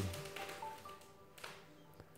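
BLU Advance 5.0 Android smartphone's startup jingle, playing faintly through the phone's small speaker as it boots, with a few short pitched notes.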